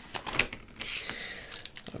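Plastic packaging being handled on a desk: a compact flash card's blister pack is moved and set down, and the small plastic bag holding an adapter is picked up. The sound is a run of light, irregular clicks and crinkles.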